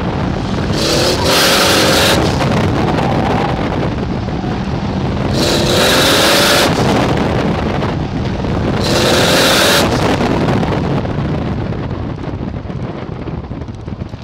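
Car engine pulling hard on an autocross run, rising in pitch in three surges about four seconds apart, each with a loud high rush of tyre and wind noise. It eases off near the end as the car slows.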